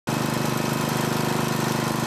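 A motor vehicle's engine idling steadily, with an even, rapid pulse.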